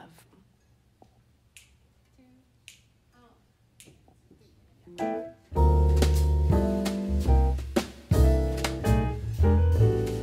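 A few soft finger snaps about a second apart count off the tempo, then about five seconds in a jazz combo comes in loud, with piano and double bass.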